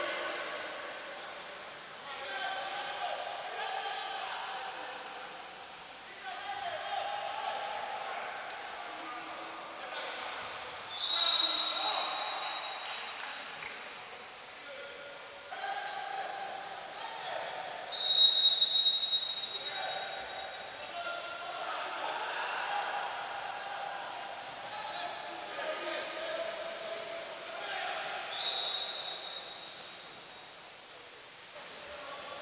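Water polo referee's whistle blown in three long, shrill blasts, roughly seven and ten seconds apart, over distant shouting voices.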